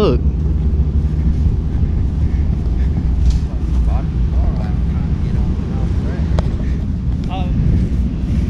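A steady low rumble of wind buffeting the camera microphone, with faint voices in the distance now and then.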